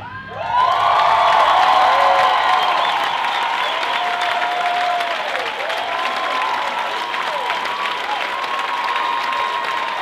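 An audience breaks into applause and cheering about half a second in, right after the music stops, with whoops and shouts over steady clapping.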